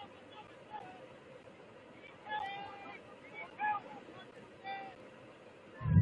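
Distant shouts from players and spectators, three short calls about two and a half, three and a half and four and a half seconds in, over a steady background hiss. Just before the end a loud low rumble starts on the microphone.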